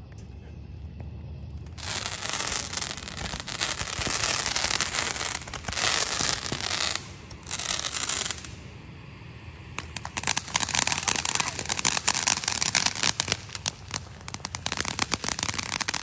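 Backyard consumer fireworks spraying sparks. A loud hissing spray starts about two seconds in and runs for several seconds, then a short break, then a long run of rapid crackling to the end.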